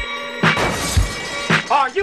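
Alarm-clock bell ringing, cut off about half a second in by a sudden crash like shattering glass. Then a theme song starts, with a drum beat about twice a second and a voice coming in near the end.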